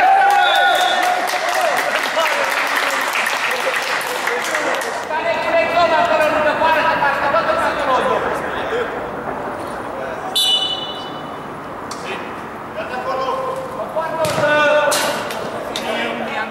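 Men's voices calling out during play on an indoor mini-football pitch, with a few sharp ball knocks, and a short referee's whistle blast a little over ten seconds in, around a free kick.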